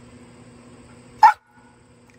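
A dog gives a single short, loud bark just over a second in, over a faint steady hum.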